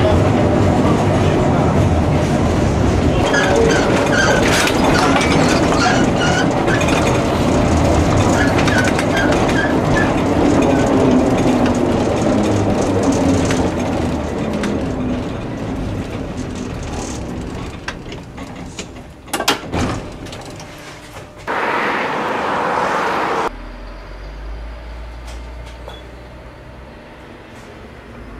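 Inside a 1949 two-axle Type N tram (a wartime KSW design) running along the track: a loud rumble of wheels and running gear that fades as the tram slows to a stop. A couple of sharp knocks come near the end, then a hiss of about two seconds that cuts off abruptly, leaving a low hum.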